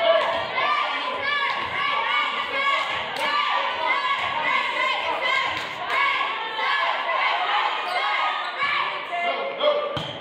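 A volleyball being hit and thudding during a rally, amid the chatter and calls of many players and spectators echoing in a large gymnasium.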